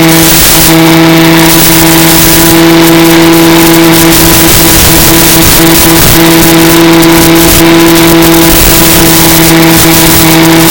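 Electric motor and propeller of a Mini Skywalker FPV plane in flight, a loud steady drone that holds one pitch, with airflow rushing past the microphone that swells and fades as the plane banks and levels.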